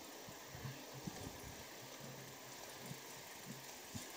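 Faint, muffled rolling and wind noise of a bicycle ride picked up by a bike- or rider-mounted camera, with a few soft low bumps from the road.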